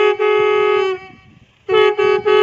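Several conch shells blown together on one held note, with short breaks in the sound every half second or so. The note dies away about a second in and the blowing starts again sharply after a gap of under a second.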